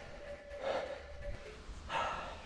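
A mountain biker breathing out between remarks: one breathy puff a little past half a second in, and another breath near the end.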